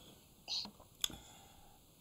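Mostly quiet, with a brief faint whispered sound, like a breathy 's', about half a second in, and a single sharp click about a second in.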